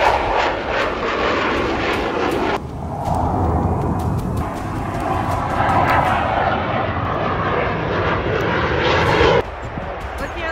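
Low-flying Navy EA-18G Growler jets, engine roar passing close overhead. It is heard in edited clips, the sound changing abruptly about two and a half seconds in and again near the end.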